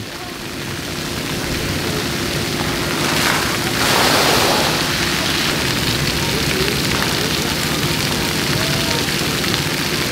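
Splash pad fountain jets spraying and water pattering onto the pad surface, a steady hiss that swells louder for about a second and a half around four seconds in. A steady low hum runs underneath, with faint voices in the background.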